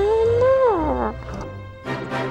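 A wordless cartoon voice, about a second long, rising a little and then sliding down in pitch, over orchestral background music that grows fuller near the end.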